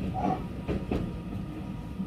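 Electric train heard from inside the carriage as it runs past a station platform: a few wheel clacks over rail joints over a steady low running hum.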